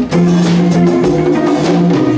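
Live band playing an instrumental passage: electric guitars, bass, drum kit and congas, with a low note held through most of it over a steady drum beat.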